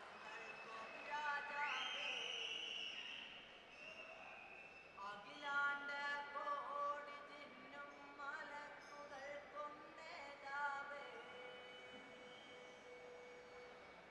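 A song sung to accompany a Kolkali stick dance, heard fairly faintly in a large hall: a voice holding long notes that slide up and down between phrases.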